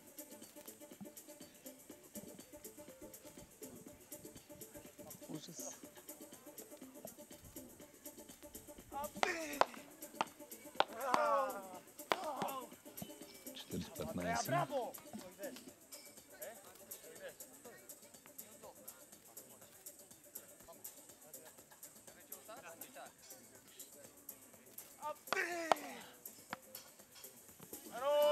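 Beach tennis court sound under faint background music: players' voices calling out a few times in the middle and again near the end, with a few sharp knocks of paddles hitting the ball.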